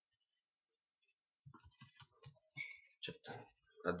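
Computer keyboard typing: a quick, irregular run of keystroke clicks starting about a second and a half in, as a short line of code is typed.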